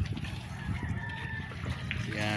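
A faint, drawn-out bird call about half a second in, lasting about a second, over a steady low rumble.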